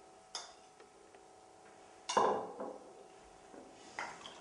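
A spoon clinking twice against a bowl while scooping out infused olive oil, each clink ringing briefly; the second, just after two seconds in, is the louder. A couple of faint ticks fall between them.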